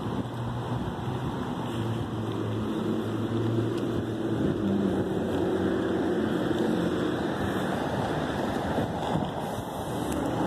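Street traffic noise: a steady low engine hum under a broad hiss, growing a little louder over the first few seconds.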